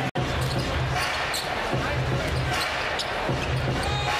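Arena crowd noise in a basketball arena, with a basketball being dribbled on the hardwood court. The sound cuts out for an instant just after the start at an edit.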